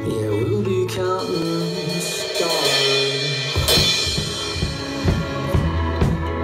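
A recorded pop song plays with held pitched notes; about three and a half seconds in, an acoustic drum kit joins live with a cymbal crash and then a steady beat of drum strikes, played with light-up drumsticks.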